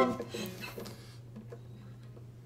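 Acoustic guitar capoed high up the neck, a bright chord ringing out and fading away, followed by a few faint notes or string sounds. The chord sounds almost like a mandolin. A steady low hum runs underneath.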